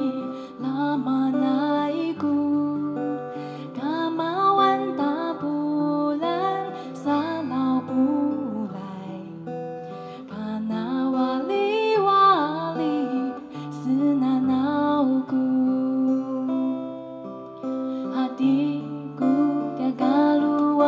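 A woman singing a slow melody in long phrases, accompanied by a man playing acoustic guitar.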